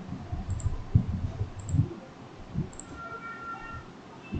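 Soft, irregular clicks and taps of a computer mouse and desk as a user works through software.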